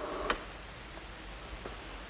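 Low steady hiss of an old television soundtrack, with a single faint click about one and a half seconds in.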